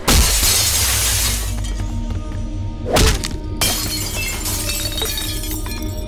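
Glass shattering loudly as a body smashes through a glass panel, the shards spilling for over a second, over dramatic background music. A heavy hit about three seconds in is followed by more glass breaking.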